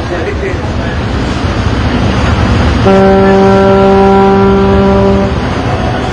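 A ship's horn sounds one steady, single-pitched blast of about two and a half seconds, starting about three seconds in, over the constant noise of city traffic and crowd chatter.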